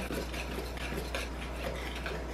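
Cake batter being stirred by hand in a stainless steel mixing bowl: the utensil clinks and scrapes against the metal sides in quick, irregular strokes.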